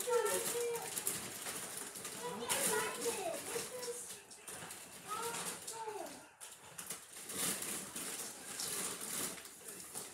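Indistinct talking in short phrases with pauses, too unclear to make out words, with short bursts of hiss between the phrases.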